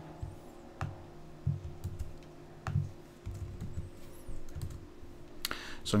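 Computer keyboard typing: irregular, scattered keystrokes as lines of code are edited.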